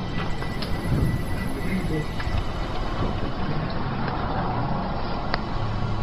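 Low-quality phone-video audio: a steady rumbling noise with a few clicks, and under it a faint, distant chanting voice, the Islamic call to prayer from a nearby mosque.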